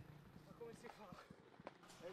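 Near silence: faint outdoor ambience with a few soft, scattered clicks and faint snatches of a distant voice.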